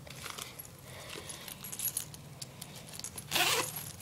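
Metal zipper pulls of a Smiggle multi-zipper pencil case clinking and rattling in small scattered ticks as it is handled, with a brief louder rasp near the end.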